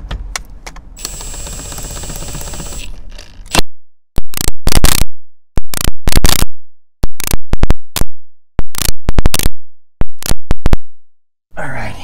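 Milwaukee cordless impact wrench driving the 19 mm steering-wheel retaining nut down tight. First a steady whir as it spins the nut on, then several short, very loud bursts of rapid hammering separated by brief pauses as it impacts the nut firmly.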